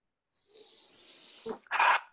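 A man takes a short, loud breath near the end, just after a small mouth click, before he begins to speak.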